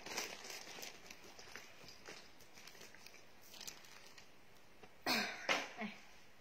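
Faint rustling and light clicks as clothes and plastic bags are handled, then a short, loud cough about five seconds in.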